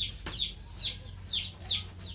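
Chicks peeping: a steady string of short, high, falling peeps, about three a second.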